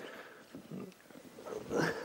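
A person breathing quietly, with a louder, breathy intake of breath near the end.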